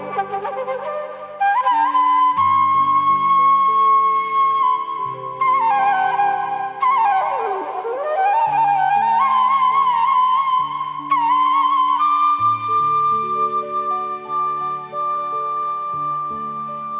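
Bansuri (Indian bamboo flute) playing a slow melody in raag Khamaj, with held notes bent between pitches and one long downward slide about halfway through. Sustained keyboard chords sound beneath it.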